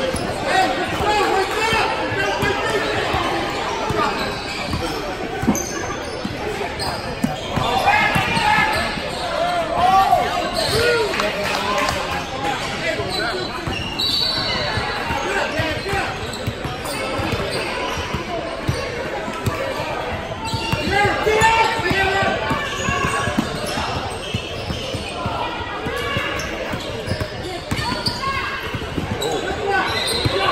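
Voices of players and spectators calling out over a basketball bouncing on a hardwood court, with many short knocks, all echoing in a large gym.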